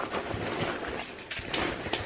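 Rustling of a fabric backpack and the items inside it being handled as it is emptied, with a couple of faint light knocks about one and a half seconds in.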